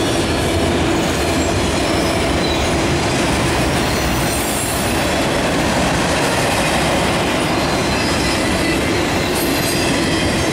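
Cars of a manifest freight train rolling past at close range: steady, loud noise of steel wheels on the rails.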